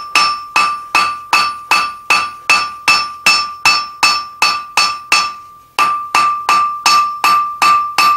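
Hand hammer blows on red-hot steel over an anvil, about three a second, each followed by the anvil's clear ring. The smith is flattening a small square taper stood on its diamond, spreading it into a leaf. There is a brief pause about five seconds in, then the blows resume.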